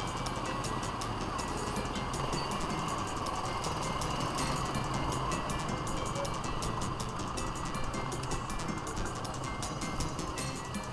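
Music with a regular beat playing over the steady noise of slow, congested street traffic.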